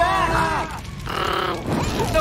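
Wordless vocal sounds from animated characters: short grunts and cries, with a brief lull about a second in.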